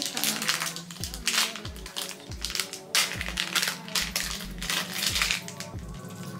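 Hip-hop background music with a steady beat and deep sliding bass notes, with irregular crinkling of plastic packaging as a small accessory is unwrapped.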